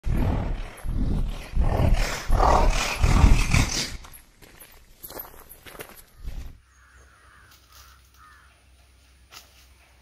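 A loud, deep rumbling sound that swells several times over the first four seconds, then dies away into faint, steady outdoor ambience.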